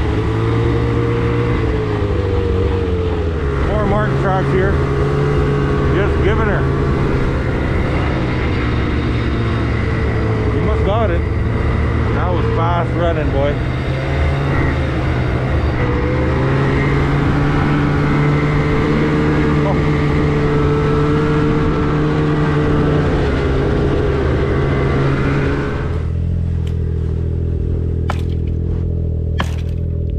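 Snowmobile engine running under way on a snowy trail, its pitch rising and falling a little with the throttle. About four seconds before the end it drops to a lower, steady idle, with a few sharp clicks and knocks.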